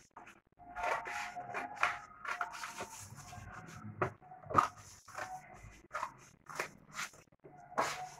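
Scissors cutting stiff chart paper: soft paper rustling and handling, then a string of sharp snips in the second half. A faint wavering whine runs underneath.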